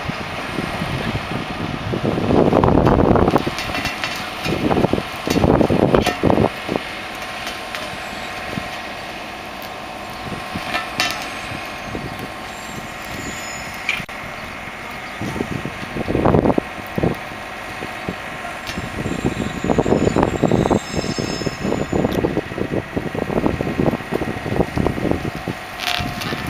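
A heavy diesel lorry engine running steadily, with louder rumbling bursts coming and going several times.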